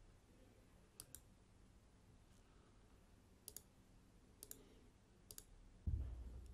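Faint computer mouse clicks in four quick pairs, spread a second or two apart, then a low thump near the end.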